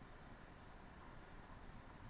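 Near silence: faint, steady room tone and hiss.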